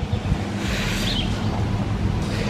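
Wind on the microphone: a steady rushing noise with a low, steady hum underneath.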